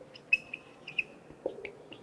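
A felt-tip marker squeaking on a whiteboard while words are written: five or six short, high-pitched squeaks spread across the two seconds.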